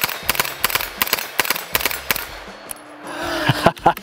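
MP5-pattern submachine gun with a binary trigger firing a rapid string of shots, about six a second, one on each trigger pull and one on each release. The shots stop a bit over two seconds in as the few rounds in the magazine run out.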